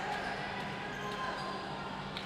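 Crowd noise in a basketball arena during live play, with the ball being dribbled on the hardwood court.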